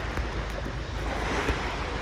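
Small waves washing up onto a sandy beach, with wind buffeting the microphone.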